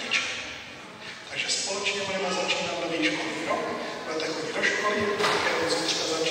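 Speech only: a man's voice talking continuously, with a brief pause about a second in.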